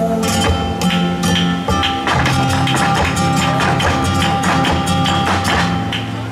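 Live flamenco guitar playing a garrotín in an instrumental passage between sung verses, with many sharp percussive clicks over the chords.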